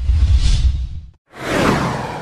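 Two whoosh sound effects for an animated logo. The first is a deep rumbling swoosh that swells and fades within about a second. After a short gap, the second sweeps in with a falling pitch.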